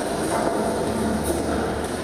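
A steady, loud rumbling noise played over a concert hall's speakers as part of a stage show's soundtrack.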